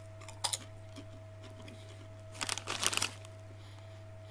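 Potato crisps crunching as they are bitten and chewed. There is a short crackle about half a second in, then a longer run of crackly crunches about two and a half to three seconds in.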